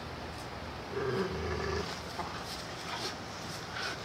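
A dog gives one short, steady-pitched vocal sound about a second in, lasting under a second, while jumping and tugging at a spring-pole rope toy, with a few scuffs and rustles from the jumping.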